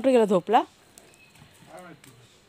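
A person's voice calling out loudly in a few short syllables, followed by quieter speech near the end.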